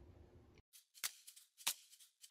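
A few quiet, sharp clicks spaced about half a second apart, over near silence.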